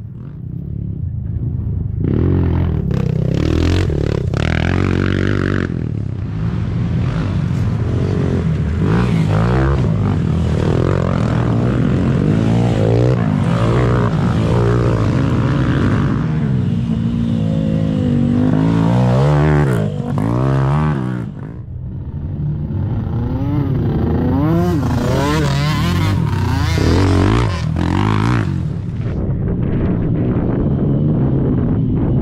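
Youth race ATV engine heard from on board, running hard through a trail with its pitch rising and falling as the throttle opens and closes; it drops off briefly about two-thirds of the way through before picking up again.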